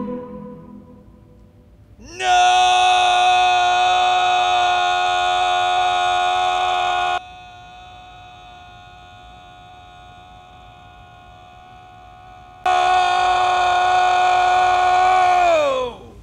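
A loud electronic whine, a sci-fi sound effect, sweeps up in pitch about two seconds in and holds steady. It drops suddenly to a much quieter, duller level for about five seconds, comes back loud, then slides down in pitch and dies away at the end.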